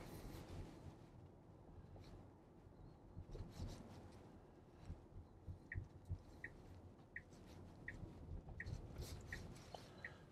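Tesla turn-signal indicator ticking inside the cabin: six short, high ticks about 0.7 s apart, starting a little past the middle, as the car signals for a left turn. Faint low road rumble lies underneath.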